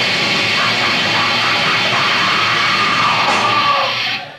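Metalcore band playing live at full volume, distorted electric guitars and drums packed together. Over the last two seconds one note slides steadily downward, and the song stops suddenly at the very end.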